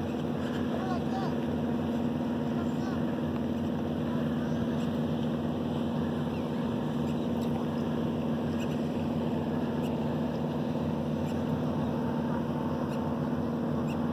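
An engine running steadily at constant speed: an even, low drone that does not change.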